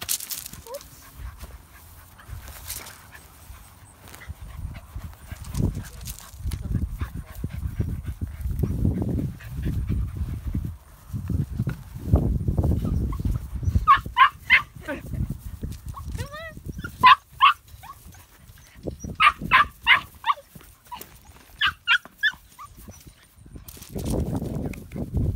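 Puppies yipping in quick clusters of short, high yelps, starting about halfway through and coming in four bursts. Before that there is a low rumbling and rustling noise.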